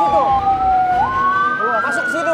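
Ambulance siren wailing, its pitch sliding slowly down and then climbing back up, with two siren tones overlapping.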